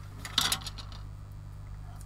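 Plastic model-kit sprues being handled: a brief clatter of plastic parts about half a second in, then only a steady low hum.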